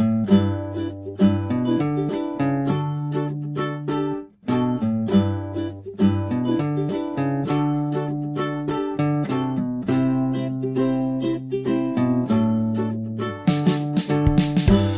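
Upbeat background music of plucked ukulele with a steady beat, briefly dropping out about four seconds in.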